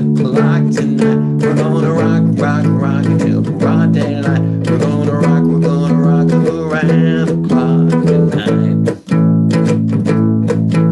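Two-string cigar box guitar strumming an instrumental break of a 1950s rock-and-roll tune, with no singing. The chord changes about two seconds in and again about five seconds in, and the playing briefly drops out just before the end.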